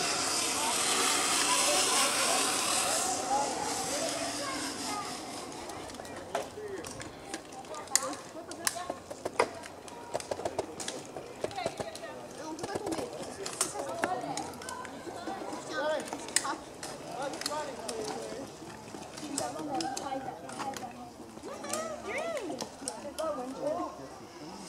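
Zip-line trolley whirring along its steel cable for about three seconds, then distant voices of people chatting, with scattered sharp clicks.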